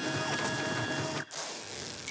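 Printer sound effect: a dense mechanical printing noise with faint steady whines that breaks off sharply about a second and a quarter in, followed by a short brighter hiss.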